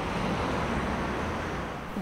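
Steady traffic noise of cars driving along a busy city street.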